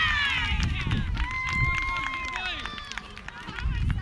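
Excited high-pitched shouting, with a name called out at the start and one long, steady high shout held for about a second a little over a second in.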